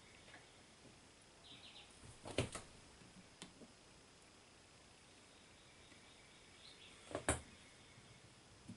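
Faint handling sounds of small carburetor fuel-pump parts, springs and the plastic pump body, being picked up and set down on a paper-towel-covered bench: a soft knock about two seconds in, a light click a second later, and another knock near the end, over a low hiss.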